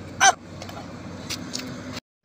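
Steady outdoor background of road traffic, with one short vocal exclamation about a quarter second in.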